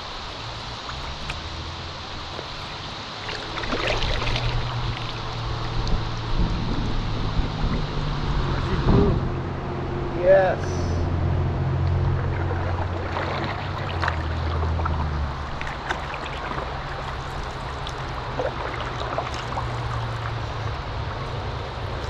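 Canoe on a slow river: water trickling and paddle strokes in the water, under a steady low hum through the middle of the stretch. A short voice-like call stands out about ten seconds in.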